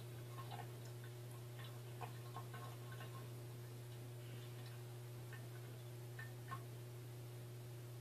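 A quiet room with a steady low hum and a few faint, scattered small clicks and ticks.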